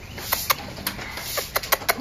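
A dog's claws clicking on concrete as it walks, in a string of sharp, uneven clicks that come closer together near the end.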